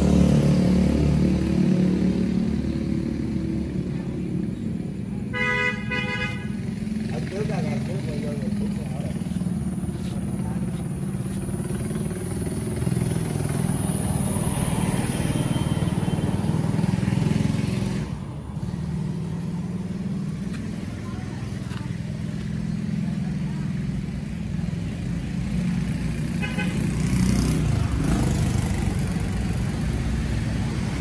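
Market-yard traffic noise: vehicle engines running in a steady low rumble, with a vehicle horn honking for about a second some five seconds in and a shorter honk near the end.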